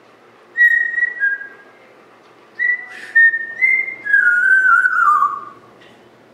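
African grey parrot whistling: a few short high whistled notes, then a longer whistle that slides down in pitch in steps near the end.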